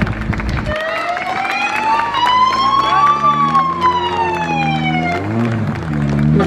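A siren wailing through a single slow cycle: its pitch rises for about two seconds, then falls for about two seconds, and it stops about five seconds in.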